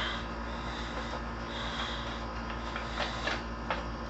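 The metal hard-drive cage of a darkFlash DLV22 PC case being worked loose and slid out of the steel chassis: a brief rustle at the start, a scrape in the middle and a few light clicks, over a steady low hum.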